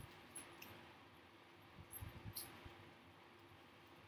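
Near silence: room tone with a faint steady hum and a few soft bumps and rustles, the most of them about two seconds in.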